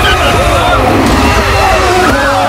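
Open-wheel race car engines revving in quick throttle blips, the pitch rising and falling again and again, loud over shouting voices.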